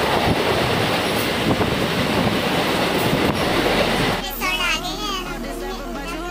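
Mumbai suburban local train running at speed, heard from inside the carriage: a loud, dense noise of wheels on track and rattling coach. About four seconds in, it gives way to background music with a singing voice.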